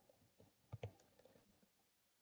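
Faint computer-keyboard keystrokes as a numeric PIN is typed: several light key clicks, two a little more distinct just under a second in.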